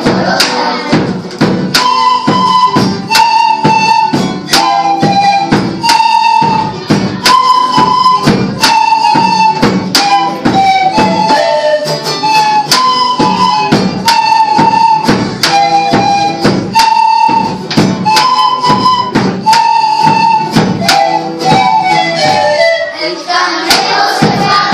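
Flutes playing a melody in unison, its short phrases repeated, over a steady beat on a large hand drum.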